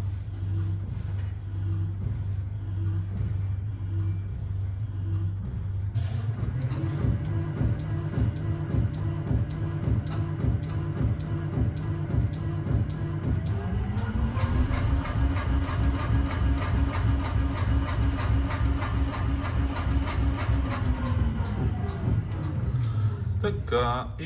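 Shock absorber test dynamometer stroking a repaired adaptive damper through rising speed steps, in the final test after the repair. Its drive hum steps up in pitch about a quarter of the way in and glides up again past halfway, with a regular pulse of the strokes, then winds down near the end.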